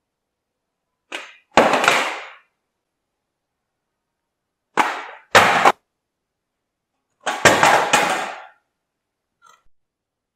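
Black plastic D-Link router being kicked across a wooden plank floor: three bursts of sharp knocks and skidding clatter, about two seconds, five seconds and seven and a half seconds in, each starting with a smaller knock.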